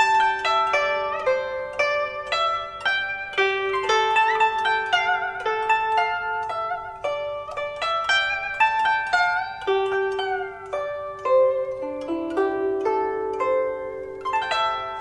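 Solo Chinese zither playing a melody of plucked notes that ring on, some of them bent in pitch, with a downward slide about ten seconds in.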